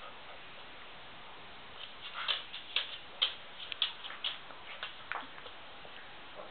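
A quick run of light clicks and taps from dogs moving about a wire dog crate, about a dozen over some three seconds, with a short squeak near the end.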